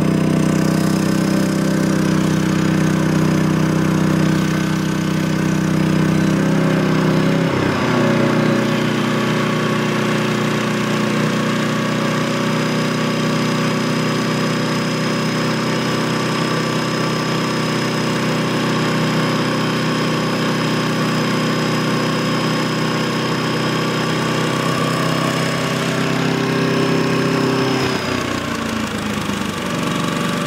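Champion 3400-watt inverter generator's small engine running steadily under load. Its pitch steps down about eight seconds in and drops again near the end, the engine throttling back as electrical load is switched off.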